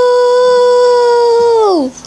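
A long, loud howl held on one steady pitch, sliding down in pitch and stopping near the end.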